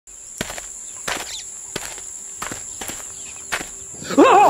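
Footsteps of a person walking on a stage floor, about six steps at an even walking pace, over a steady high-pitched drone.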